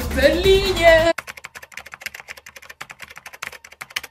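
About a second of music and a voice, cut off sharply, then a fast run of typewriter key clicks, a typing sound effect that goes on until the end.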